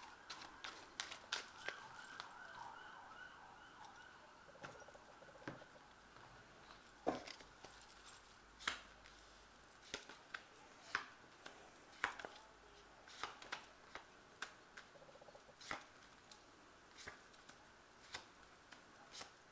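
Tarot cards being dealt one by one onto a cloth-covered table: scattered soft taps and clicks at irregular intervals. A faint wavering siren sounds in the first few seconds and fades out.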